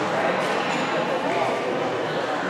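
Indistinct voices echoing in a large indoor hall: a steady murmur of talk with no single clear speaker.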